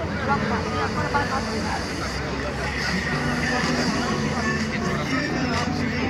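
Indistinct chatter of several voices talking at once among spectators, over a steady low rumble.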